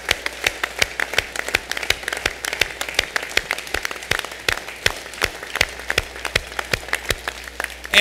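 Crowd applauding, a steady patter of many hands with some loud, close single claps standing out.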